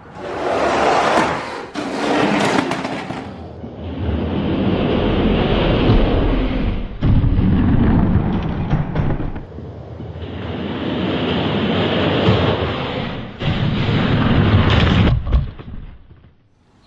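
Die-cast toy monster trucks rolling down an orange plastic Hot Wheels track: a loud, steady rumble and rattle of the plastic wheels on the plastic lanes, breaking off and starting again several times.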